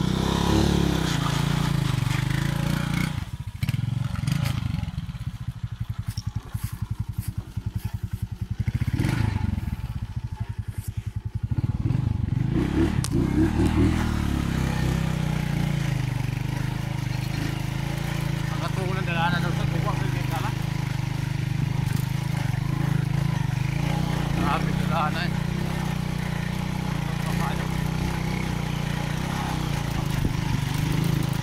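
Small motorcycle engine idling with an even pulse for several seconds, then running steadily as the bike is ridden along a dirt track.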